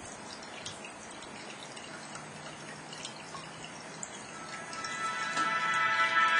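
Windows Media Center startup music from the Samsung Q1 Ultra's built-in speakers, swelling up over the last second and a half, after a few seconds of low steady hiss.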